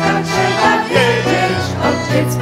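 Live instrumental accompaniment of a sea song between sung verses: the band plays on with a moving bass line and melody.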